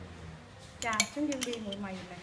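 A metal spoon clinks sharply about a second in as mayonnaise is scooped out of a jar.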